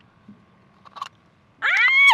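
A woman's short high-pitched squeal, an "ah!" that rises and then falls in pitch, a startled cry of fright as the octopus clings and moves in the trap.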